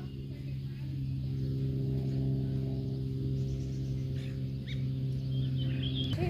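A steady, sustained low drone with a few overtones, like a gong or singing bowl held on one chord: background music. A few faint bird chirps come in near the end.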